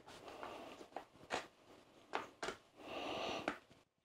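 Faint handling sounds of a metal pin being pushed through the plastic handle and diverter shaft of a Pentair multiport pool valve: a few light clicks and soft scraping and rustle as it slides in.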